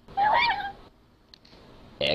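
A short, high-pitched animal cry with a wavering pitch, under a second long: a cartoon sound effect.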